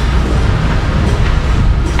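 Gusty wind buffeting the microphone as a storm comes in: a loud, steady rumble with a hiss over it.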